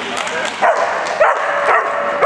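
A dog barking, three short barks about half a second apart, over a steady background of arena noise and voices.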